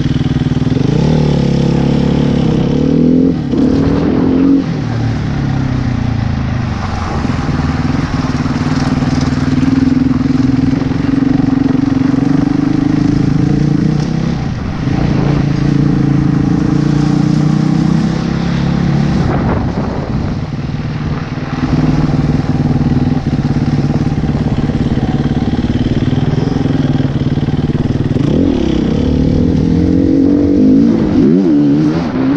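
Dirt bike engine running at low speed while being ridden, its revs rising and falling several times.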